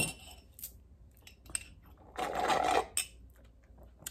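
Faint clinks of a metal straw against a ceramic mug as the mug is picked up. About two seconds in comes a short airy slurp through the straw, drawing on a mug that is nearly empty.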